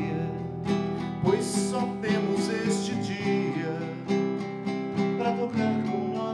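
Nylon-string classical guitar strummed steadily in a slow song, with a man singing along.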